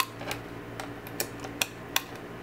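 Five or six sharp metal clicks, irregularly spaced, from a Crop-A-Dile eyelet tool setting metal eyelets into punched holes in a board, over a faint steady hum.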